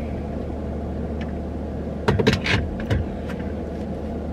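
Steady low hum of a stationary car idling, heard from inside the cabin, with a few short knocks and rustles about two seconds in.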